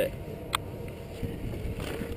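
Steady hum and low rumble of a chairlift ride, with one sharp click about half a second in.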